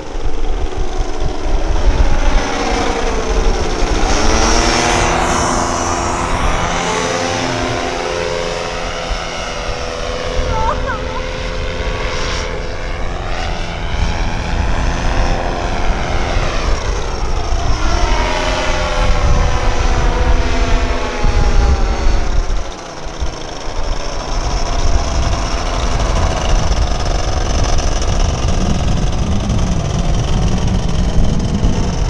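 Paramotor's backpack propeller engine droning overhead, its pitch sweeping up and down several times as it flies past and away.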